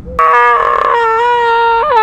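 One long, high-pitched howl-like vocal note, held steady for about a second and a half, bending upward just before it cuts off.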